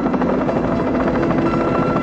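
Helicopter in flight: a steady, rapid rotor chop with a continuous engine drone.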